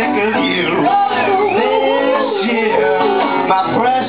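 Live band music: singing over an amplified guitar and band, including a high swooping vocal line about half a second in.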